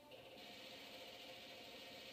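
Faint television soundtrack heard across a small room: a steady hiss that comes in about half a second in, with quiet held tones under it.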